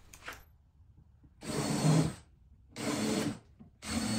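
Cordless drill with a countersink bit boring holes in three-quarter-inch plywood. It runs in three short bursts, each under a second, starting about a second and a half in and coming about a second apart.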